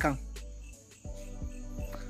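Crickets chirping steadily at night, a faint high drone, after a man's voice trails off.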